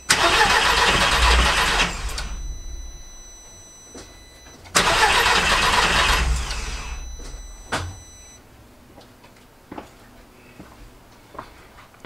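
Audi TT's four-cylinder engine cranked on the starter twice, about two seconds each time, with its injectors pulled out on the fuel rail and spraying into a plastic box. This is a swap test that shows two injectors not firing: faulty injectors, not wiring, behind the rough running.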